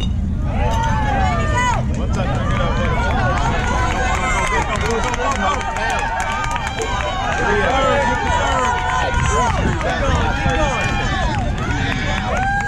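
Spectators and players shouting and cheering over one another as a ball is put in play, many voices calling at once from about half a second in. A steady low rumble of wind on the microphone sits under the voices.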